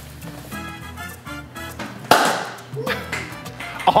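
Cork popping out of a sparkling wine bottle about two seconds in: one sharp pop, the loudest sound, followed by a brief hiss of escaping gas.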